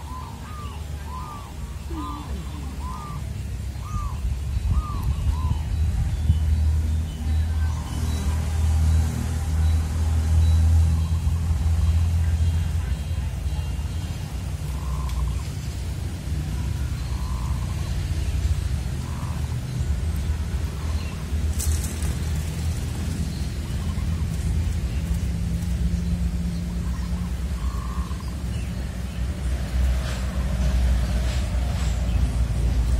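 A bird calling in a quick run of short, evenly spaced notes, about two a second, for the first few seconds, with a few single calls later. Under it runs a steady low rumble, the loudest sound throughout.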